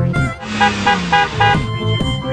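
A car horn beeping four short times in quick succession over background music.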